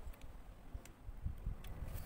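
A few faint, scattered clicks of plastic LEGO Bionicle parts knocking together as the model is handled, over an uneven low rumble.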